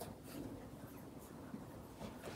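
Faint room noise in a small room, with soft rustling and a few light handling clicks.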